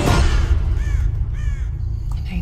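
Music cuts off into a low rumbling drone, over which a bird calls twice, two short arched calls about half a second apart, near the middle.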